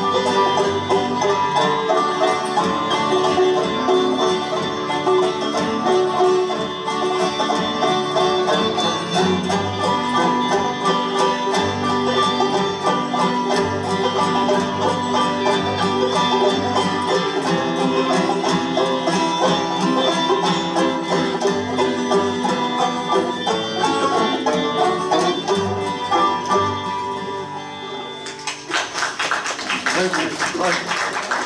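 Acoustic string band of fiddle, banjos and acoustic guitars playing an up-tempo bluegrass/old-time instrumental. The tune ends about a second and a half before the end, and brief audience applause follows.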